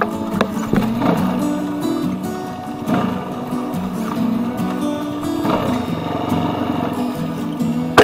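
Background music, a melody of stepping pitched notes with occasional sharp strikes, laid over trail-riding footage.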